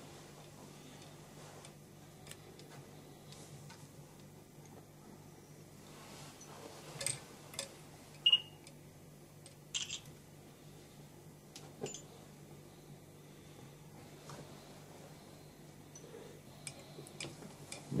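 Quiet room with a low steady hum, broken by a handful of faint clicks and small rustles from fly-tying handwork: thread being wound with a bobbin onto a hook held in a vise. A brief high squeak comes about eight seconds in.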